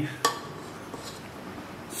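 A spatula knocks once against a stainless steel mixing bowl, a sharp click about a quarter second in, then soft, faint sounds of whipped egg whites being folded into a ricotta filling.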